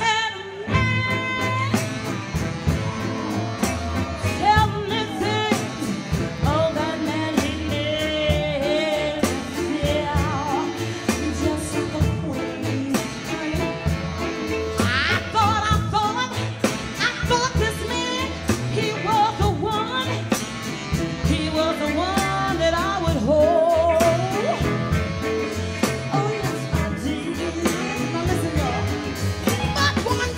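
A live soul band playing a steady beat, with singing over it through the stage microphone.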